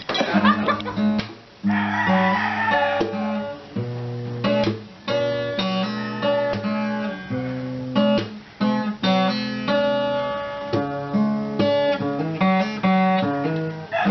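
Two nylon-string acoustic guitars playing an instrumental passage of plucked notes and strummed chords, with a few brief breaks.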